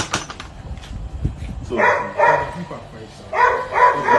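A dog barking in two quick pairs, about two seconds in and again about three and a half seconds in, with a few sharp knocks at the very start.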